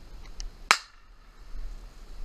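A single gunshot: one sharp crack about two-thirds of a second in, with a brief ringing tail.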